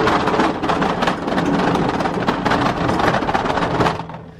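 U.S. General steel tool cart rolling on its casters across a concrete floor, a continuous rumbling clatter with its plastic bins rattling, stopping at the end.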